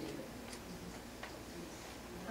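Quiet room tone with a steady low hum and two faint ticks, about half a second apart from the start and just past a second in.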